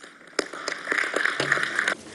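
Audience applauding: a dense patter of hand claps that starts about half a second in and cuts off suddenly near the end.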